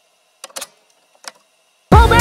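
Near silence broken by a few faint clicks about half a second in and again a little past one second, then background dance music with a beat starting abruptly near the end.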